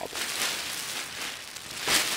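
Crinkling rustle of a thin mylar survival blanket being handled and bunched up, with louder surges about half a second in and just before the end.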